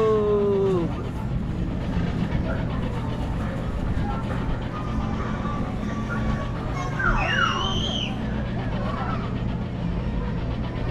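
Steady low machine hum of a spinning children's carnival ride running. Children's voices cut across it: a falling call that ends about a second in, and a high squeal that rises and falls about seven seconds in.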